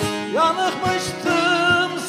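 Bağlama (long-necked Turkish saz) being plucked in a folk song (türkü). A man's singing voice comes in about a third of a second in, sliding up into a held note with vibrato.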